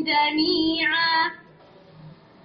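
A female voice reciting the Qur'an in melodic tajweed style, drawing out one long vowel that ends about a second and a quarter in, followed by a pause for breath.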